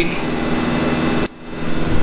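Steady mechanical hum with a few constant low tones, like a fan or air-handling unit. It drops away abruptly a little over a second in and comes back more quietly.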